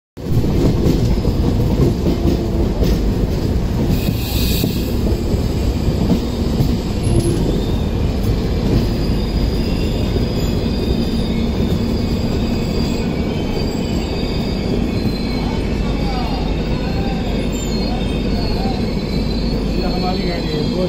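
Passenger coaches of an express train rolling past on the next track, a loud steady rumble of wheels on rails with a thin, high wheel squeal above it. A brief hiss sounds about four seconds in.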